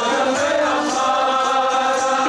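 Sikh kirtan: men chanting a hymn together over harmoniums, with the reeds sounding long, held notes under the voices.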